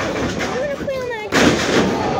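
A single loud impact in the wrestling ring about one and a half seconds in, with a short ringing tail, over crowd voices shouting and calling out.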